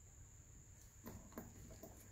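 Near silence: room tone with a few faint, short handling clicks about a second in, as a hand moves the chain and rope splice.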